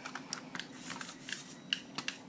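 Handling noise: light, irregular clicks and taps, a few a second, from hard plastic being handled close to the microphone.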